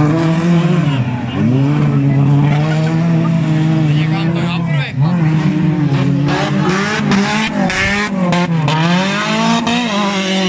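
Racing car engines being driven hard on a dirt track, their pitch rising and falling again and again as the drivers work the throttle and shift gears. A few sharp cracks come in quick succession in the second half.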